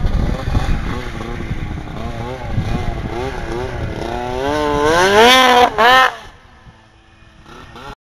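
2003 Arctic Cat Sno Pro snowmobile's F7 two-stroke twin, fitted with a Snow Stuff aftermarket muffler, revving up and down under the throttle. The pitch climbs to a loud high-rev run about five seconds in, then cuts off sharply about six seconds in, leaving only a faint sound.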